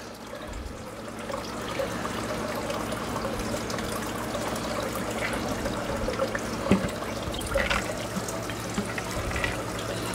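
Water slowly poured from a container into an aquarium, a steady gentle trickle into the tank with a few small splashes about seven seconds in.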